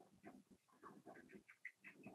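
Near silence, with only faint, scattered short sounds.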